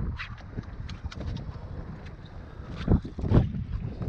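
Wind buffeting the microphone on an open boat, with scattered light clicks and two louder thumps about three seconds in.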